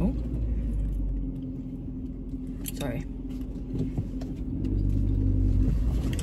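Low, steady rumble of a Fiat 500's engine and road noise heard from inside the cabin while driving. It dips in the middle and builds again toward the end.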